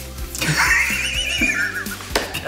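A horse whinny, a single high trembling cry of about a second and a half that drops in pitch at the end, over background music.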